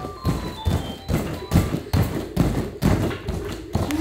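Repeated dull thumps, about two a second, of children's bare feet jumping off and landing on a vinyl-covered foam plyo box during jumping bar muscle ups. Faint music plays underneath.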